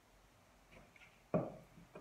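Mostly quiet room tone, with one short knock about a second and a half in.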